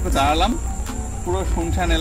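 A man talking, over a steady high-pitched drone of insects.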